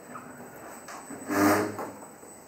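A desk chair scraping briefly on the floor, a half-second scrape with a steady low tone about a second and a half in, over quiet room noise.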